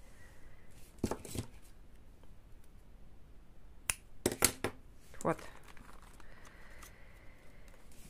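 A few light clicks and crinkles of hands handling candle wicks, small metal wick tabs and their plastic bags, with a short cluster of sharp clicks about four seconds in.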